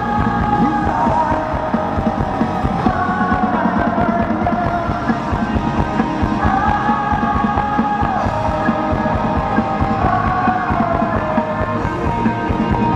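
A rock band playing live with electric guitars, bass and drums. Long-held melodic lines slide slowly between notes over a steady, dense backing.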